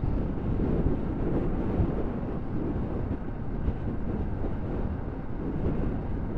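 Motorcycle cruising at a steady speed: a steady rush of wind and road noise over the bike's engine running underneath.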